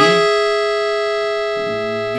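Piano accordion's treble reeds sounding one held sixth, G-sharp and E, on the right-hand keyboard. The chord starts sharply and is held through, slowly fading.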